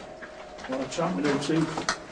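A person's voice speaking, starting about half a second in.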